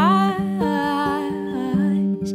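Music: a woman's voice sings or hums a wordless melody, sliding up into a held note at the start, over a steady low accompaniment.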